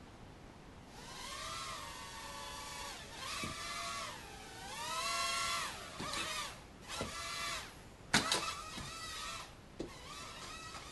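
Propel Quark micro quadcopter's small electric motors whining, starting about a second in, the pitch rising and falling as the throttle changes. A sharp knock comes about eight seconds in.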